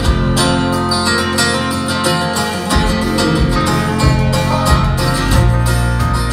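Live country band playing an instrumental stretch with no singing, led by acoustic guitar and pedal steel guitar over bass and drums.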